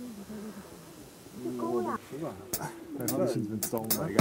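Indistinct voices of several people talking, no clear words, with a few sharp clicks in the last second and a half.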